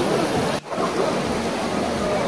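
Shallow mountain stream rushing over rocks, a steady water noise. It cuts out sharply for a moment just over half a second in.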